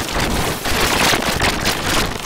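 Loud, dense static-like noise with a fast crackling flicker and no voice or tune in it: a harsh, heavily distorted audio effect.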